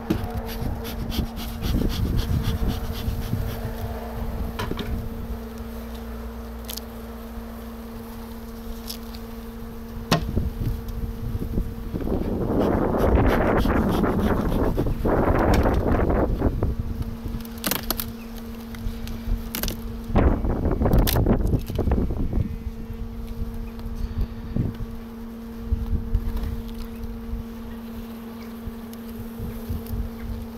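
Steady hum of a strong honeybee colony in an opened hive, with scattered clicks and knocks of frames being handled. Twice, a little under halfway and again past the middle, louder rushing noise bursts rise over the hum for a few seconds.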